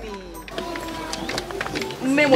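Dialogue speech over soft background music with steady held tones.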